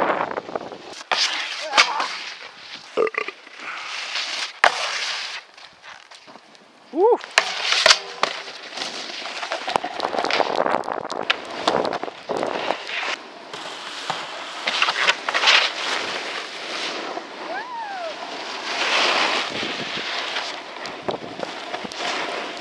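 Snowboards scraping and sliding over packed snow in uneven rushing bursts with sharp clicks, mixed with wind on the microphone. A couple of short vocal whoops come through, one about seven seconds in and one past the middle.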